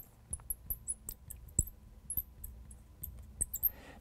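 Marker tip squeaking and ticking on a glass lightboard while a cloud outline and words are drawn: a string of short, high, faint squeaks that stop shortly before the end.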